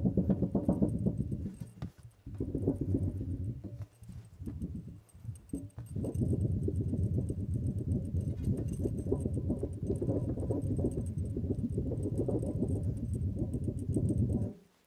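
Thin, flexible round chopping board shaken back and forth by hand as a wobble board, giving a rapid low wibbly-wobbly wub-wub. It comes in three short bouts, then a long one of about eight seconds.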